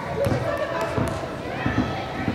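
Young players' voices calling out across a large indoor field house, with several dull thuds of a soccer ball on the turf.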